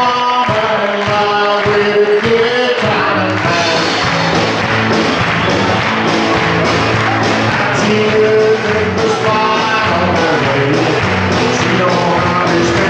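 Live country band playing with singing: acoustic guitar, electric guitar, electric bass and drum kit. The full band with steady drums comes in more densely about three seconds in.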